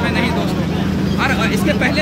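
Bus engine running with a steady low drone, heard from inside the passenger cabin under a man speaking, his voice pausing briefly about a second in.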